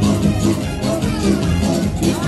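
Romani band playing live dance music, with electric guitar and a steady beat.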